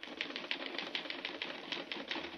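Typewriter keys clacking in rapid, even typing, about ten keystrokes a second.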